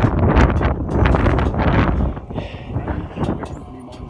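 Wind buffeting the microphone, a rough low rumble with scattered knocks, loudest over the first two seconds and then easing off.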